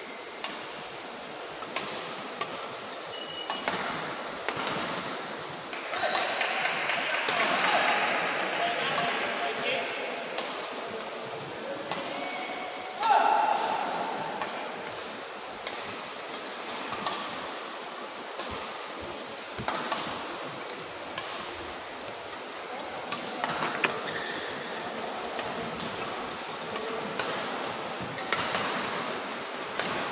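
Indoor sports hall sound: voices of people talking in the badminton hall, with a loud sudden voice about thirteen seconds in, over a steady background hum and scattered sharp taps.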